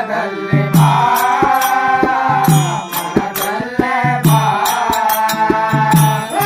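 Kannada devotional bhajan: a voice sings a wavering melodic line over harmonium chords. A tabla keeps time with deep bass-drum strokes every second or two, and small hand cymbals click sharply.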